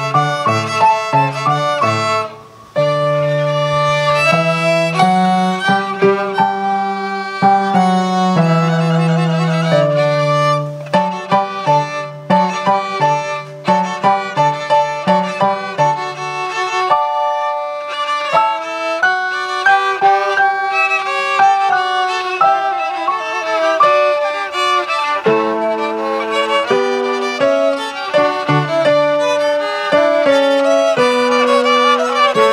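Two violins and an electronic keyboard playing a trio piece together, the keyboard holding low notes under the violin melody. There is a brief break about two and a half seconds in before the playing resumes.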